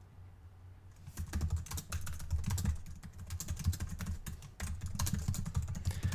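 Typing on a computer keyboard: rapid, irregular key clicks that start about a second in.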